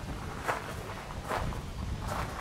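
Footsteps on a gravel path, two steps landing a little under a second apart, over a low steady rumble.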